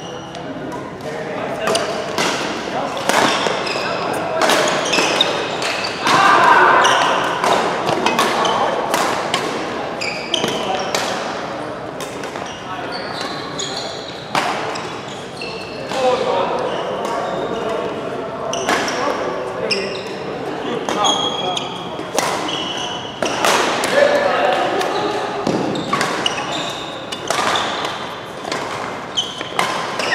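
A badminton doubles rally in a large indoor hall: sharp, irregular hits of rackets on the shuttlecock and short high squeaks of sports shoes on the court mat, all echoing in the room.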